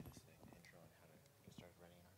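Near silence with faint, indistinct talking in the room.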